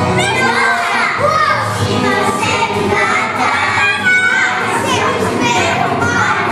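A group of young girls singing karaoke together into a handheld microphone over loud backing music, with more children's voices and shouting mixed in.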